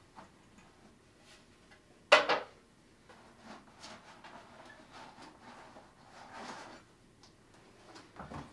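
Handling sounds from a telescope dew shield being pulled off the front of the optical tube: a sharp double knock about two seconds in, then softer rubbing and light knocks as it is worked free and carried off.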